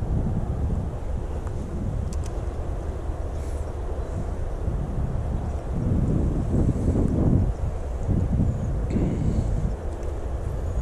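Wind buffeting the microphone: an uneven low rumble that gusts stronger about six to seven and a half seconds in.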